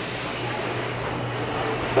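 A steady low mechanical hum over an even background noise, unchanging throughout.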